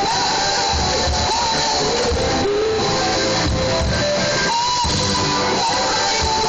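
A rock band playing live: electric guitars over a drum kit, steady and loud, with melodic lines bending in pitch.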